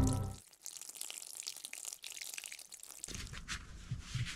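A thin stream of liquid trickling and splashing, the sound of peeing over the side into water. Lower sounds come back in about three seconds in.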